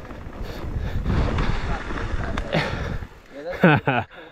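Mountain bike rolling fast over a dirt and gravel singletrack: a steady rushing noise of tyres on the trail and the bike rattling over rough ground. A rider gives a short shout or laugh near the end.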